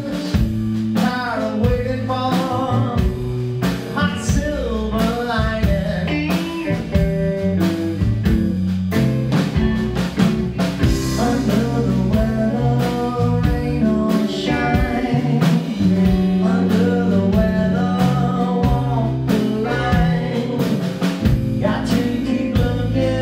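Live blues band playing: guitars and drum kit with singing, at a steady full volume.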